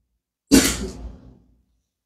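A man clears his throat once into a close microphone, about half a second in. It is a short, rough burst that fades away within about a second.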